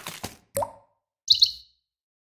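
Studio logo sound effects: a short plop about half a second in, then a quick high two-note bird-like chirp just over a second in, with the fading tail of a sweep at the start.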